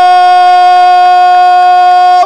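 A Brazilian TV commentator's long, held shout of "goool", one loud, steady sustained vowel celebrating a goal.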